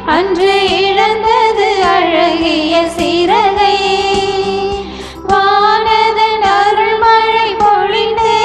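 Women singing a Tamil Christian hymn into microphones, with electronic keyboard accompaniment holding low sustained notes under the melody. The voices break briefly between phrases about five seconds in, then carry on.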